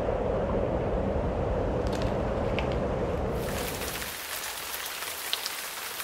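Storm sound effect: a steady rushing wind that gives way, about three and a half seconds in, to the hiss of heavy rain.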